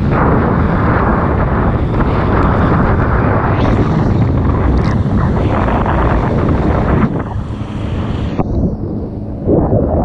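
Wind buffeting the camera's microphone, mixed with the rushing hiss of spray off a water ski cutting across a boat's wake. The rush eases for a couple of seconds near the end, then comes back loud as the ski throws up spray again.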